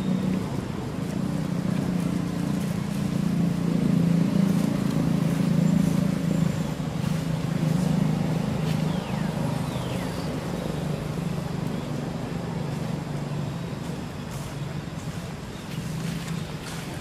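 A passing motor vehicle's engine: a low rumble that builds to its loudest about four to six seconds in, then slowly fades away.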